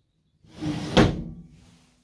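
A Japanese sliding paper door sliding shut along its wooden track, ending in a sharp knock against the frame about a second in.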